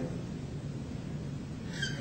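Steady room tone: a low hum and even hiss with no distinct events, and a brief soft hiss near the end.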